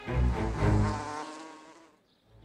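A low, wavering buzz that swells twice in the first second and then fades away.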